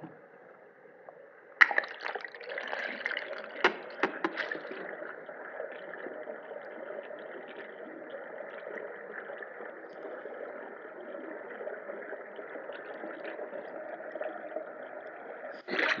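Swimming-pool water churning and splashing as a swimmer swims butterfly. A sudden burst of splashes and knocks comes about a second and a half in, then settles into a steady rush of water.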